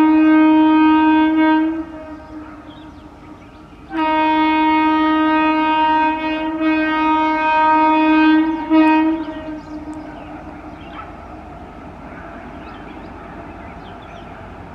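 An approaching Indian Railways train sounds its horn: a single-tone blast that ends about two seconds in, then a longer blast of about five seconds finished with a short toot. After that comes a steady rumble as the train draws nearer.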